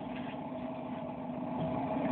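A steady, fairly quiet mechanical hum with faint held tones running through it, like a motor or engine running.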